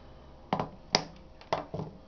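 Four short clicks and knocks of hand tools and wire being handled on a desk, the sharpest about a second in.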